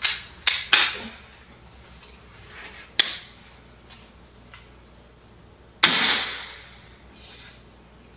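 Repeating pistol crossbow being cocked and shot: three sharp mechanical clacks in the first second, another snap at about three seconds, and the loudest snap, with a long fading ring, near six seconds.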